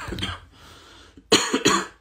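A man coughing: one cough right at the start, then two loud coughs in quick succession about a second and a half in.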